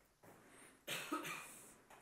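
A person coughing about a second in, two quick bursts close together that die away within a second.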